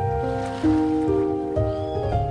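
Slow solo piano melody, single notes ringing over a low wash of ocean waves, with a faint brief high call near the end.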